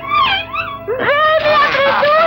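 A high, child-like voice crying out in long, wavering wails over background music.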